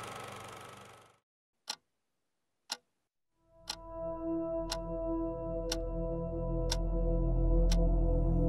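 Sharp, clock-like ticks, one a second, from the soundtrack. At first they come in near silence; about three and a half seconds in, a low drone with several sustained steady tones swells in beneath them.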